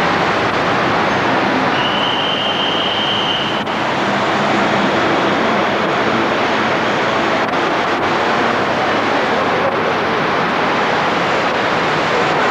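Steady road and engine noise heard inside a moving car, with a short high steady tone about two seconds in.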